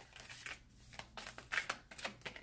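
A deck of tarot cards being shuffled by hand: a series of short crisp card snaps and rustles, clustered in the second half.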